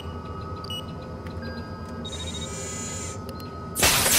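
Electronic sound-design beeps over a steady hum, a short whirring sweep about halfway through, then a loud sudden blast near the end as the scoped test rig fires.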